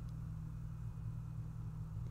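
Steady low hum under faint background noise, with no other sound.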